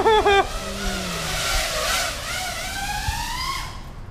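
A burst of laughter at the start, then the whine of a 5-inch FPV quadcopter's brushless motors. The whine rises steadily in pitch over a couple of seconds as the throttle comes up, with a rushing noise of prop wash and air under it.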